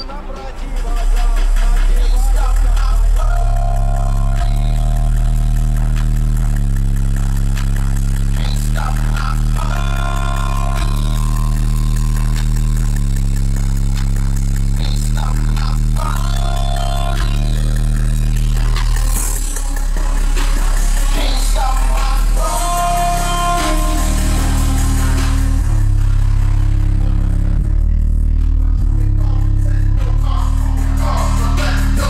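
Music with very heavy, sustained deep bass played loud through a newly installed car audio system with a subwoofer, heard inside the car's cabin; the bass comes in about a second in.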